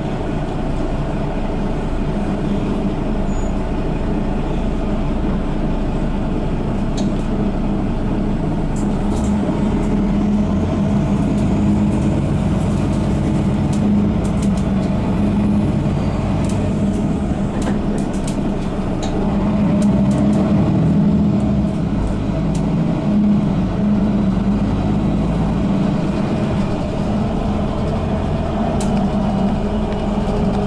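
Cabin of a 2012 Mercedes-Benz Citaro G articulated bus with Voith automatic gearbox under way: the diesel engine and drivetrain give a steady drone with a strong low hum over road noise, swelling a little about two-thirds of the way through. Scattered light clicks from the interior fittings.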